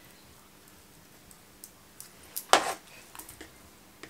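Light handling noises: a few small clicks, one sharp louder click a little past halfway, then a run of soft ticks. The sounds come from hands working aspidistra leaf strips and small pins around a floral-foam block in a plastic dish.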